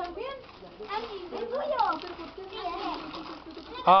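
Several children's voices talking and exclaiming over one another, with a sudden loud drawn-out "ahhh" shout just before the end.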